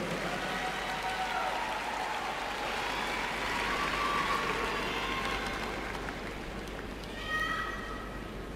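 Arena crowd cheering and applauding with scattered high-pitched shouts, gradually dying down; a brief high shout near the end.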